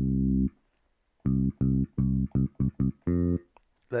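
Software bass notes played live from an Akai Fire controller's pads: one held note that stops about half a second in, then, after a short pause, a run of short notes ending on a slightly longer one.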